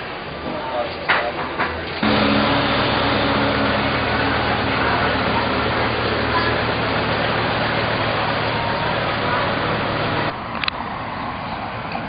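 Street traffic: a steady engine hum with road noise that starts abruptly about two seconds in and cuts off abruptly near the end, with quieter background ambience before and after.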